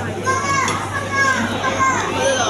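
Children's voices talking and calling out in a busy restaurant, over a steady low hum.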